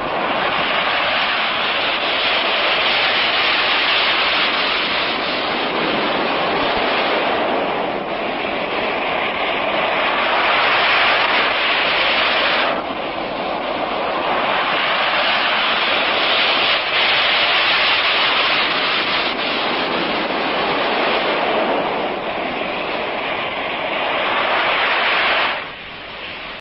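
Sea surf washing in: a steady rushing roar that swells and eases every few seconds, dropping suddenly about thirteen seconds in and stopping just before the end.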